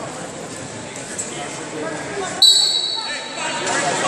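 Referee's whistle: one sharp blast of a steady high pitch about two and a half seconds in, fading within about a second, which restarts the wrestling bout. Voices echo in the hall around it.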